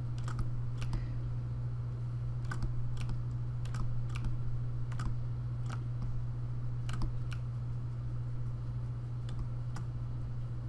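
Scattered clicks from a computer mouse and keyboard at irregular intervals, some in quick pairs, over a steady low hum.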